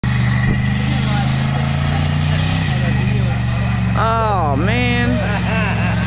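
Car engine held at high revs during a burnout, dropping in pitch a little under halfway through. Someone shouts loudly over it about four seconds in.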